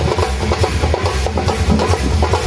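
Procession drums beaten with sticks in a fast, dense rhythm of sharp strikes over deep low beats.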